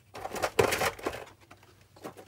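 Sheets of printed paper and card rustling as they are handled and laid down on a cutting mat: a short burst of rustling in the first second, then quiet.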